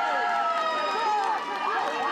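Many voices shouting and cheering at once from the players and spectators of an amateur football match, following a goal. Some high shouts are held for about a second.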